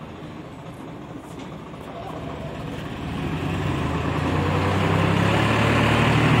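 Swaraj 855 tractor's three-cylinder diesel engine running under load as it pulls a trolley heaped with gravel, growing steadily louder from about two seconds in.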